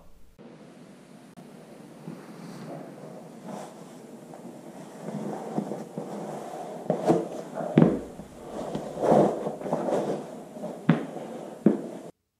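Rujo Roscoe caiman cowboy boots being pulled on over jeans: leather and denim rustle, with a few sharp thumps as the boots drop onto the carpeted floor, the loudest about two-thirds of the way through and near the end.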